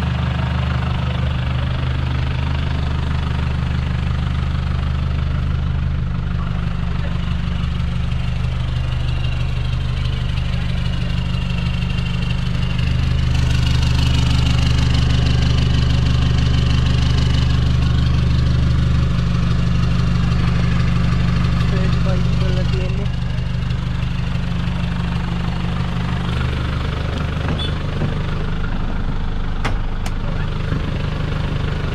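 Pickup truck engine idling steadily with a low, even note. It gets louder for about ten seconds in the middle.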